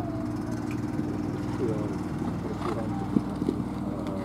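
A motor running with a steady low hum, faint voices in the background, and one sharp knock about three seconds in.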